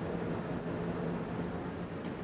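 Steady low hum with a faint even hiss: background room noise, with no distinct events.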